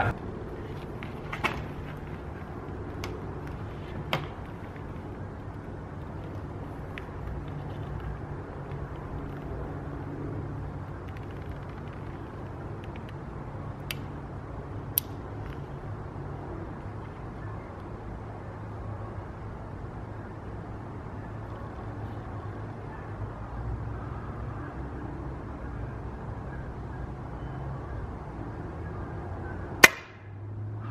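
A steady low outdoor background hum with a few faint clicks, then near the end one short sharp shot from a suppressed .22 PCP air rifle, the Taipan Veteran with a Hill 8-inch suppressor. The pellet misses the pigeon.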